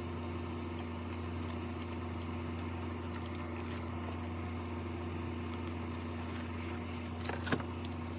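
A steady low hum made of a few fixed low tones, with a few faint clicks about seven seconds in.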